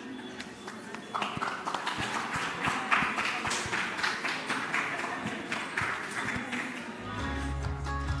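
Audience clapping, a dense patter of many hands. Near the end, steady instrumental music comes in.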